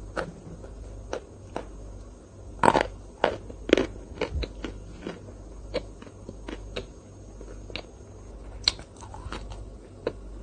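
Close-miked eating sounds from a chocolate ice-cream dessert: a string of short, sharp crunchy clicks and cracks, densest about three to four seconds in.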